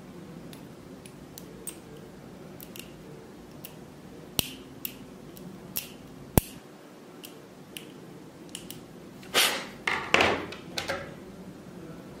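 Small hard 3D-printed resin model-kit parts clicking and ticking as they are handled and snapped together at the joints, with two sharper snaps near the middle. Near the end, a few seconds of scraping and rubbing as a joint is pushed and wiggled into place.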